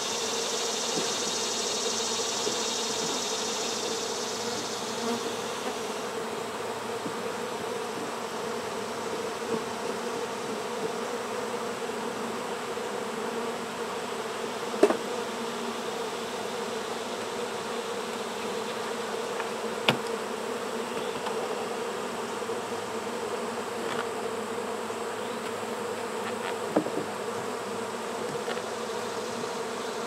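Many honeybees flying around an open hive, buzzing in a steady drone. A brighter hiss sits over it for the first few seconds, and a few sharp knocks come later.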